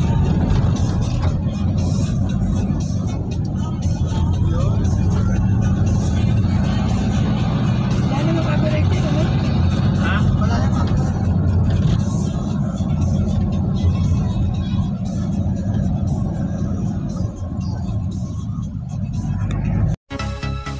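Steady low rumble of engine and road noise inside a moving car's cabin, with faint music and voices behind it.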